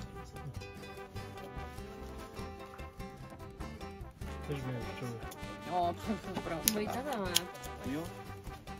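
Background music with sustained notes throughout. Near the end a voice says a word or two, and there are two sharp clicks close together.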